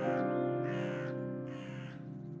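A crow cawing three times, evenly spaced, over a held music chord that slowly fades.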